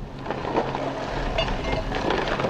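Excavator's diesel engine running steadily with a low hum as it works on the burned timber trestle.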